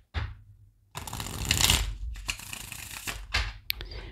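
A deck of tarot cards being shuffled by hand: a dense rustle of cards starting about a second in and lasting about two seconds, then a couple of sharp clicks near the end.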